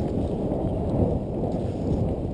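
Steady low wind rumble buffeting an action camera's microphone, muffled and dull with little treble.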